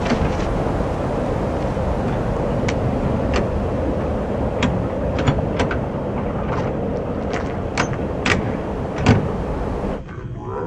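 Metal clicks and knocks from the door latch and handle of a Haulmark cargo trailer being worked open, a scattering of them with the strongest near the end, over a steady rushing background noise.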